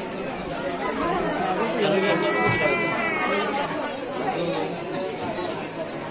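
Crowd chatter: many people talking at once in a busy, crowded market lane. About two seconds in, a high-pitched tone rises above the voices for about a second.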